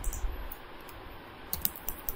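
Computer keyboard keystrokes: after a quiet stretch, a quick run of several key taps in the last half second or so, typing text into a software dialog.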